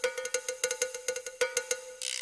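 KAT MalletKAT 8.5 electronic mallet controller played through its GigCat 2 sound module: a rapid roll of about eight strikes a second on a single note of a struck percussion sound.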